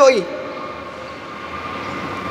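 A man's amplified voice ends a phrase with a falling pitch just at the start, then a pause filled with a steady background hum and a faint, thin, steady tone from the microphone and sound system.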